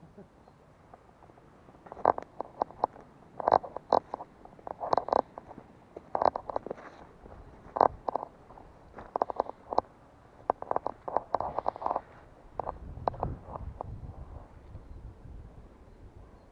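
Footsteps crunching through dry grass, twigs and brush, a short burst of crackles roughly every second. In the last few seconds the crackling stops and a low rumble takes over.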